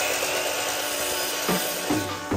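Miter saw running at full speed, a steady motor whine as the spinning blade is brought down to trim a little off the end of a caulk-gun extension tip. Music comes in near the end.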